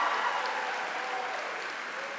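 Crowd applauding, the applause fading away.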